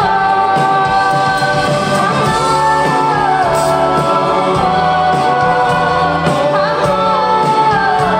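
Live band playing a slow song with singing, heard from the audience seats of a theatre.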